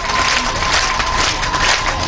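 Audience applauding, a dense irregular patter of many hands clapping. A thin steady tone runs under it and stops near the end.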